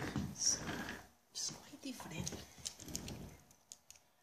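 Quiet whispered or muttered speech, in short broken phrases with hissing sibilants.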